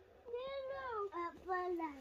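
A young child's high voice chanting in a sing-song: three drawn-out phrases, the last gliding down in pitch near the end.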